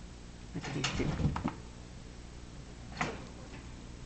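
Thumps and rattling knocks from a chinchilla leaping about against a cardboard wall and a wire cage. A cluster of knocks with deep thuds comes about half a second in and lasts about a second, and a single sharp knock follows near the three-second mark.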